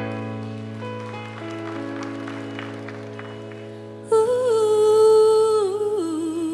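Slow ballad opening with a held low bass note under sustained chords. About four seconds in a female voice comes in loud, singing a long wordless held note with vibrato that slowly falls in pitch.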